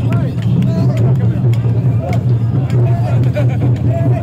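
Mikoshi bearers chanting as they carry the portable shrine: many voices overlapping in short rising-and-falling calls over a steady crowd rumble, with scattered sharp clicks.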